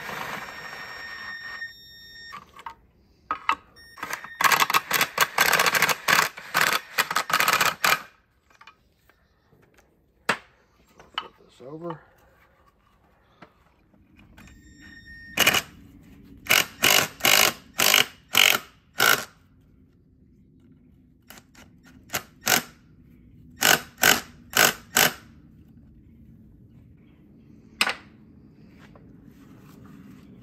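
Cordless drill-driver running down the bolts of an oil cooler onto its housing, snugging them before they are torqued. A steady motor whine at the start, a dense run of sharp clicks a few seconds in, then a series of short trigger pulls in the second half.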